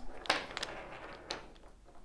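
Painted wooden cylinders being gathered up and cleared off a wooden grid board: a few light clacks of wood on wood with some sliding, fading away toward the end.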